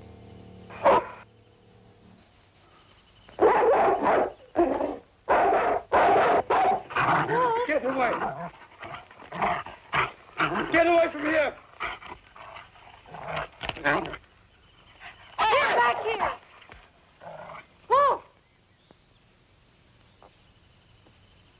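A German shepherd dog barking and whining in repeated bursts, its cries rising and falling in pitch. The dog is distressed.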